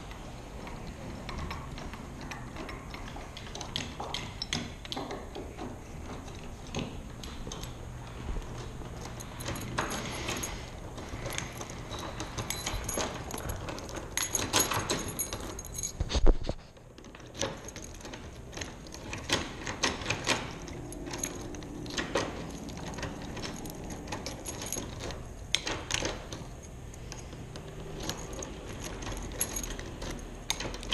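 Keys jangling, with small metal clicks and rattles from a brass doorknob and deadbolt being handled. A single loud knock comes about sixteen seconds in.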